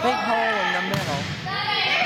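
Voices calling out in a gymnasium during a volleyball rally, with a single sharp smack of the ball about a second in.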